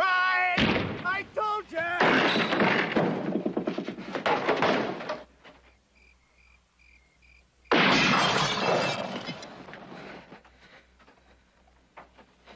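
Television drama soundtrack of a night fight: a loud cry and a noisy crashing commotion in the first five seconds, then crickets chirping in a short lull, then a sudden crash like breaking glass about eight seconds in that fades away over the next two seconds.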